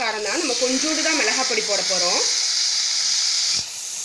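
Chopped okra, onion, tomato and green chilli sizzling as they fry in a clay pot: a loud, steady hiss that stops near the end, just after a single click. A woman's voice talks over the first half.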